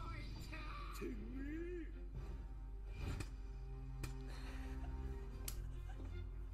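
Anime soundtrack playing: background music with held notes and an angry shouted line of dialogue about a second in, then a few sharp hits as the fight plays out.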